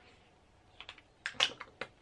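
A quick, irregular run of small sharp plastic clicks from a lip balm tube being handled and capped. It starts about a second in, after a near-quiet moment.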